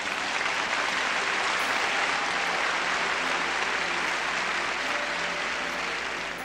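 A large audience applauding, a dense steady clapping that begins to die down near the end.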